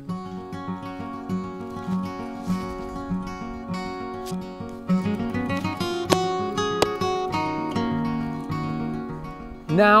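Background acoustic guitar music with plucked notes at an even pace, broken by two sharp knocks a little over six seconds in.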